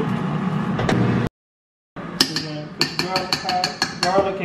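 Kitchen utensils clicking and tapping on dishes at a counter: a quick run of light sharp clicks, about seven a second, with a faint metallic ring. A brief dead gap about a second in.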